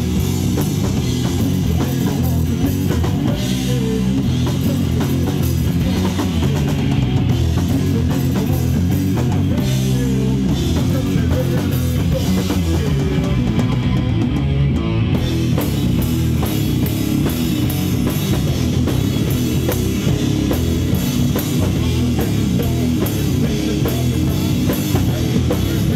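Heavy metal band playing live and loud without a break: electric guitar, bass guitar and a full drum kit.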